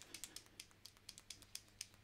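Paint pen being shaken, the mixing ball inside rattling in faint, quick clicks, about eight a second.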